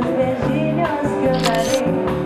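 Live band playing: an electric bass guitar and drum kit keep up a steady groove, with a brief bright crash-like hit about one and a half seconds in.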